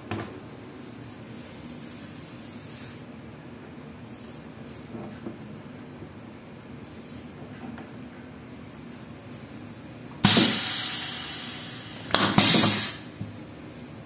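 Pneumatic piston filling machine (Doersup PPF-500) exhausting compressed air as its cylinder cycles: a sudden loud hiss about ten seconds in that fades over a second or so, then a second, shorter hiss about two seconds later, over a low steady hum.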